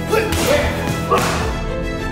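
Background music with two sharp, whip-like swishes laid over it, a little after the start and again about a second in.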